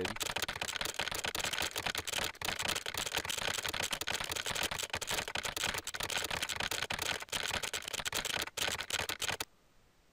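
Rapid, continuous keyboard-typing clicks, the simulated keystroke sounds that the TypYo auto-typing program plays while it sends code into an editor. They stop suddenly about nine and a half seconds in, when the typing is finished.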